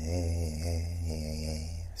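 A man's voice holding one low, steady hesitation sound for nearly two seconds, a drawn-out filler between words.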